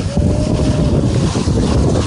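Strong gusty wind buffeting the microphone in a heavy, fluctuating rumble, over water rushing and splashing past a heeled sailboat's hull.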